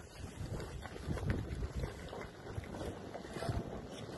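Wind buffeting the microphone in irregular low surges, with faint irregular crackles and knocks beneath it.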